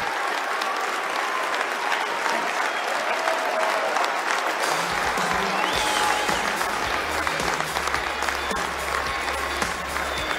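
A large audience applauding and cheering. About halfway through, music starts underneath, its steady bass coming up under the applause.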